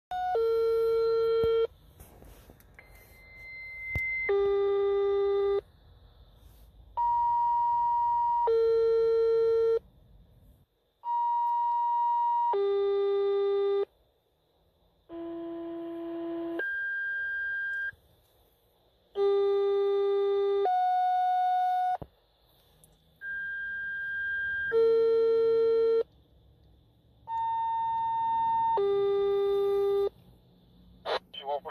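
Fire dispatch two-tone paging tones from a radio: eight pairs of steady beeping tones, each tone about a second and a half long, one pair every four seconds or so, each pair at a different pair of pitches. These are station tone-outs alerting several engine and ladder companies to an additional structure fire call.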